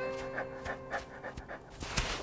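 A wolf panting in quick, even breaths, over held music notes.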